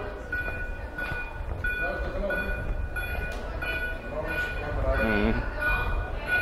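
A high electronic beep repeating steadily in short pulses over a low street rumble, with a brief voice about five seconds in.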